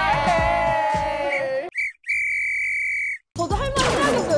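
Music with a wavering high pitched line over a beat, cut off about a second and a half in. A steady, buzzy electronic beep follows, lasting about a second and a half with a brief break. Music starts again near the end.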